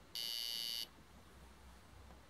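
Piezo buzzer driven by an Arduino sounding one short, high-pitched electronic beep of well under a second, which starts and stops abruptly.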